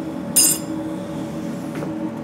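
A small chunk of sodium metal dropped into a beaker of water, landing with a short sharp plink about a third of a second in, then sizzling faintly as it reacts with the water and gives off hydrogen. A steady low hum runs underneath.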